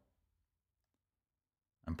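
Near silence, broken by a voice starting to speak again just before the end.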